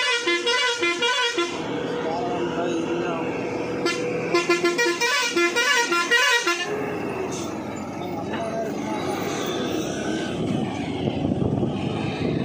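Vehicle horn sounding in rapid repeated pulsed blasts, first until about a second and a half in, then again from about four to six and a half seconds, over engine and road noise. After the horn stops, engine running and road noise go on.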